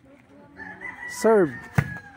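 A rooster crowing: a pitched call whose final note falls sharply in pitch about a second and a quarter in. A sharp slap follows near the end, a volleyball struck with the forearms.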